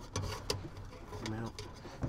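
Faint clicks and handling noise of wires and a screwdriver at a furnace control board, with one sharp click about a quarter of the way in.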